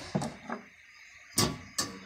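Handling noise from dismantling an electric fan: a brief knock near the start, then two sharp clicks in the second half, about half a second apart.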